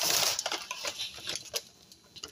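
Rustling of food packaging being handled and put away, dense at first and dying down about half a second in. A few light taps and clicks follow.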